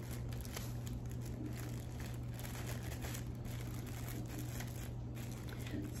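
Soft crinkling and small clicks as a wooden bead garland and its packaging are handled, over a steady low hum.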